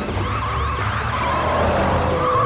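Cartoon police cruiser driving up with a low engine rumble, then a tyre skid screech in the second half that slides down in pitch as it pulls to a stop.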